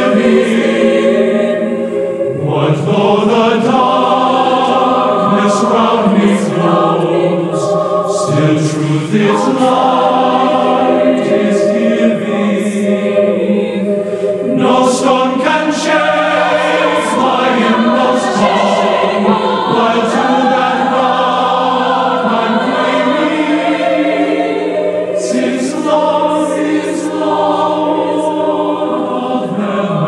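A choir singing a slow sacred piece, several voice parts moving together over a low note held steady underneath.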